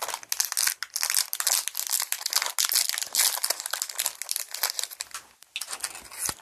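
Shiny plastic candy wrappers crinkling as hands handle one and unwrap the candy: a dense run of crackles that thins out near the end.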